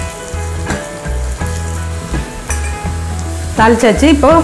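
Crushed garlic, curry leaves and spices sizzling in hot oil in a small tempering pan while a spoon stirs them.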